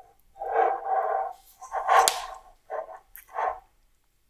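Round metal cake tin being turned and shifted on a counter, scraping in four rubbing passes, with one sharp knock about two seconds in.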